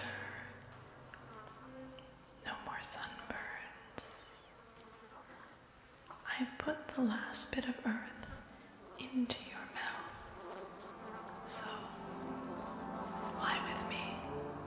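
A woman whispering unintelligibly into a close microphone in short, breathy phrases with pauses between them, as a vocal soloist's part in a contemporary piece with tape. A faint steady tone from the tape part comes in about two-thirds of the way through.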